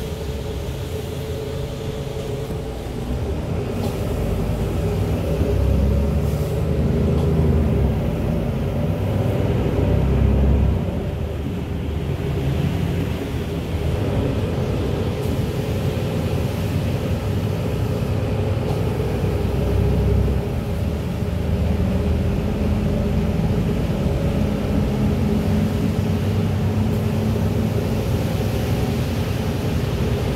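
Passenger-cabin noise of a moving city bus on a wet road: a steady low running rumble with a constant hum and the hiss of tyres on wet asphalt. It swells louder a few times in the first third.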